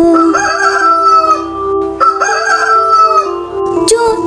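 Rooster crowing twice, one crow starting right away and a second, near-identical crow about two seconds in, each opening with a wavering rise and ending in a long held note.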